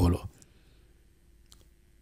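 A man's speech trails off, then a pause with faint steady room hum and a single faint click about one and a half seconds in.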